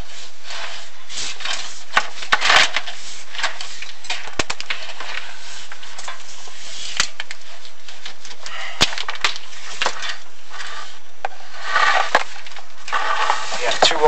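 Chimney inspection camera scraping and knocking against the brick and protruding cement inside a masonry flue as it is pushed up: irregular scrapes with sharp clicks scattered through, denser scraping near the end.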